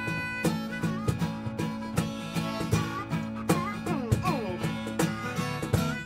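Harmonica played with cupped hands over an acoustic guitar in a bluesy acoustic tune, with a few harmonica notes sliding down in pitch around the middle.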